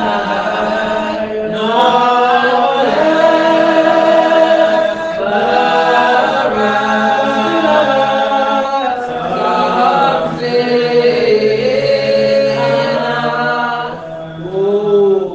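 A group of voices singing a Spiritual Baptist worship hymn unaccompanied. They hold long, slow notes together in phrases that break every few seconds.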